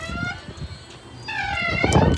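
A woman's voice: a word trails off, a short lull with low rumbling follows, then a drawn-out, wavering vowel sound starts in the last part.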